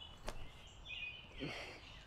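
Quiet woodland ambience, with birds chirping faintly about a second in. A single soft tap comes near the start as a disc is thrown forehand.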